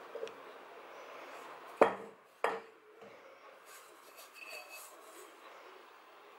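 A glass mixing bowl knocks sharply twice against the countertop, less than a second apart, over the soft rubbing of hands working stiff dough in the bowl.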